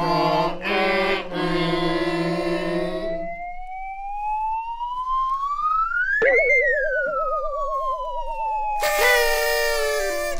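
A group singing a birthday song, ending about three seconds in. Then a whistle-like comic sound effect glides slowly up in pitch, peaks sharply about six seconds in, and slides slowly back down as the candles are blown at, with a wobbling lower tone under it. Near the end comes a short, loud buzzy blast like party blowers.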